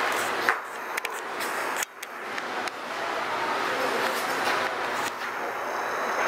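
A steady rushing noise with a few light clicks in the first two seconds. It drops out sharply for a moment about two seconds in, then returns.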